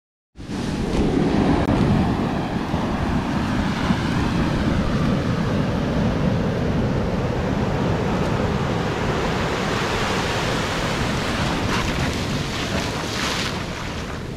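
Ocean surf washing up a sandy beach: a steady rush of breaking waves and foam, starting suddenly just after the start.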